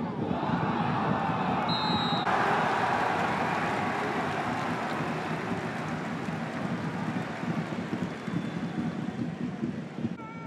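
Stadium crowd noise with one short, shrill referee's whistle blast about two seconds in, calling a foul. The crowd swells right after the whistle, then slowly dies down.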